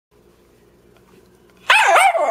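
Dog barking once near the end, a loud call whose pitch rises and falls, after faint room tone.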